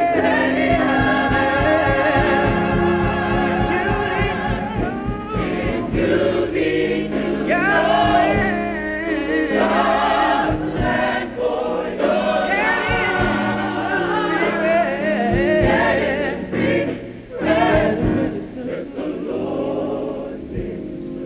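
A gospel choir singing with piano and drum kit.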